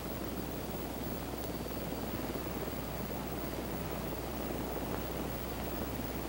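Sikorsky CH-54 Tarhe twin-turbine flying crane hovering with a sling load: a steady, even rushing noise of rotors and engines over a low hum.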